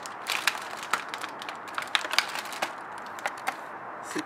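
Clear plastic tray and gold foil wrapper being handled and opened: irregular sharp crackles and crinkles of the packaging.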